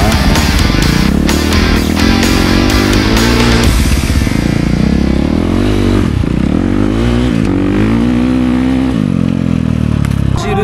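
Dirt bike engine revving up and down repeatedly, its pitch rising and falling with the throttle. Background music plays under it and drops away about four seconds in.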